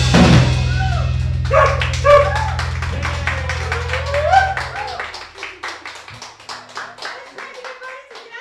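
A rock band's final chord rings out and fades, the electric bass, guitar and cymbal dying away over about five seconds. Over it a small group of people whoops and then claps.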